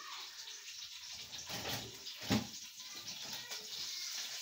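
Steady watery bubbling from a pot of fish stock with catfish and stockfish, with one soft knock a little past halfway.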